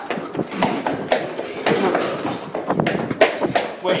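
Hurried footsteps along a corridor with irregular knocks and bumps of a hand-held camera being jostled, and short snatches of voice.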